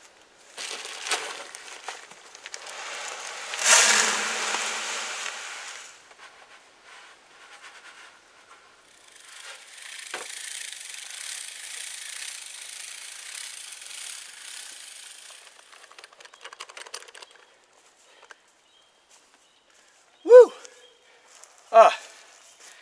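Granular fertilizer rustling and pouring into a hand spreader for a few seconds, then, after a pause, a hand-cranked broadcast spreader whirring and flinging granules as a steady hiss for about six seconds. A short vocal 'uh' comes twice near the end.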